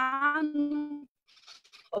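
A woman's voice holding one drawn-out vowel at a steady pitch for about a second, then a faint breathy rustle before speech resumes.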